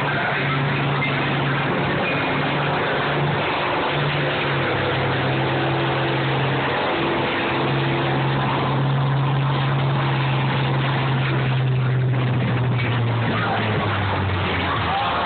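Engines of combine harvesters running steadily in a combine demolition derby, with a low, even engine drone that drops in pitch near the end.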